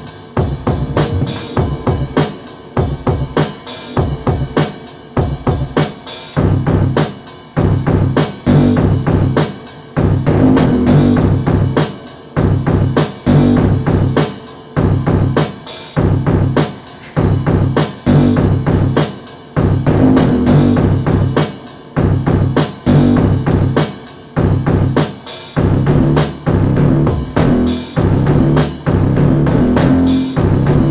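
Akai XR-20 drum machine playing a looped beat, with a synth bass line repeating underneath in a steady rhythm.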